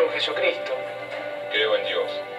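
A man speaking over soft background music, the soundtrack of a film played from a screen.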